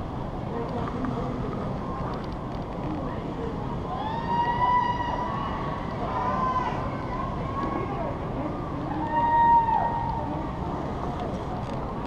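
Steady rushing wind noise on a helmet-mounted camera high on a building face, with three short, high whines that rise, hold and fall, about four, six and nine seconds in.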